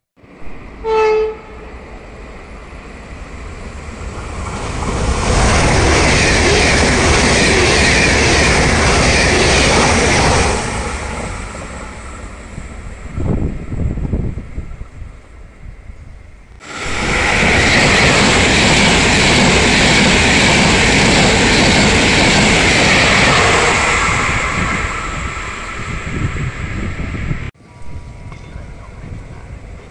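A train horn sounds briefly about a second in, then a train passes through the station at speed: a rushing rumble of wheels on rails that builds, holds loud for several seconds and fades. After a sudden cut, another loud train pass holds steady and stops abruptly near the end.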